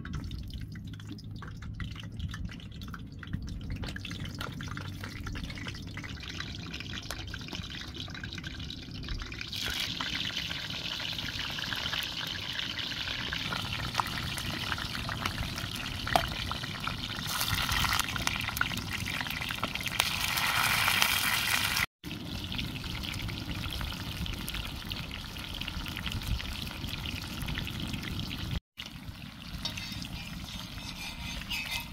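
Vegetable slices frying in hot oil in a shallow pan over a wood fire: a steady sizzle that grows louder about ten seconds in and stronger again in the second third. It cuts out for an instant twice near the end.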